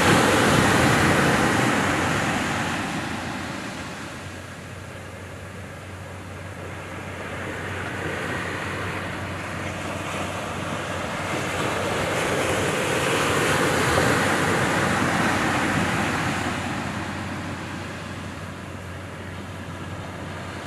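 Ocean surf breaking and washing up the beach: a steady rush that swells and fades over several seconds.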